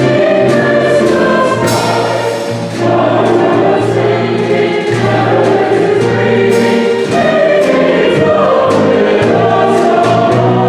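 Mixed choir singing a Christmas cantata piece, accompanied by piano, violin, bass and drum kit, with cymbal strokes ringing over sustained low bass notes.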